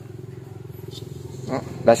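A steady low rumble with a fine, even pulsing runs through a pause in the talk. Speech resumes near the end.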